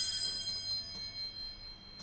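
A small bell struck once, ringing with several high tones that slowly fade.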